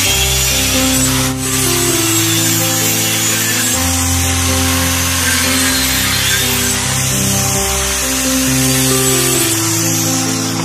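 Handheld electric circular saw running and cutting through wooden planks, a dense steady hiss, over background music.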